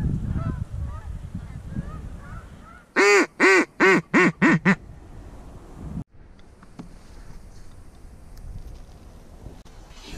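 Faint honking of Canada geese over low wind noise. About three seconds in, six loud, close duck quacks come in a descending run, each shorter and quicker than the last, in the pattern of a hen mallard's call.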